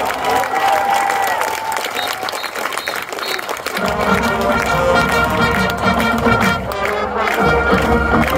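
Marching band brass dies away under crowd cheering and applause. About four seconds in, the full band of brass and drums strikes up a new piece loudly.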